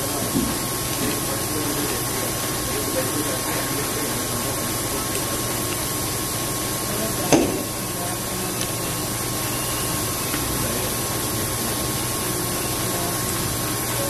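Steady workshop background noise: a constant hiss with a faint steady tone through it, and one sharp knock about seven seconds in.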